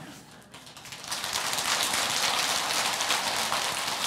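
An audience applauding, the clapping swelling in about a second in and then holding steady.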